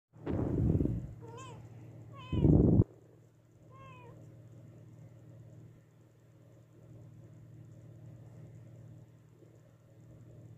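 Mother cat giving three short meows that rise then fall in pitch, calling for her lost newborn kittens. Two loud low bumps come in the first three seconds, over a steady low hum.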